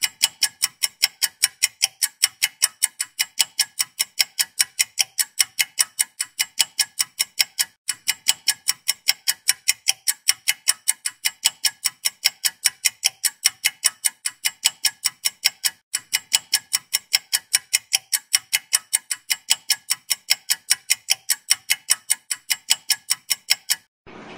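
Clock-ticking sound effect used as a thinking timer for the viewer's answer: an even run of sharp ticks, about four a second, with two tiny breaks about 8 and 16 seconds in.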